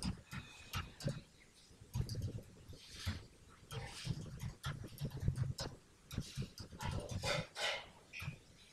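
Typing on a computer keyboard: irregular key clicks with dull thuds, and a couple of soft breathy noises between them.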